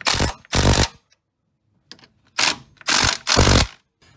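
Cordless impact wrench hammering in short bursts as it tightens the brake caliper's slide pin bolts: two bursts, a pause, then three more.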